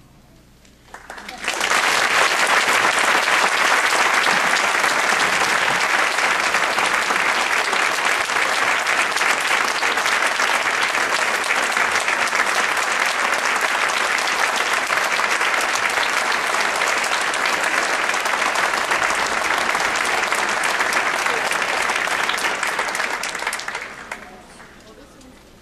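Audience applause for a school concert band. It starts after a short hush about a second and a half in, holds steady as dense clapping, and dies away near the end.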